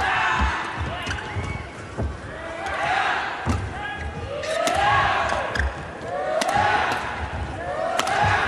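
Badminton doubles rally: rackets striking the shuttlecock in quick exchanges, with shoes squeaking on the court mat and feet thudding, the squeaks bunching around the middle and latter part.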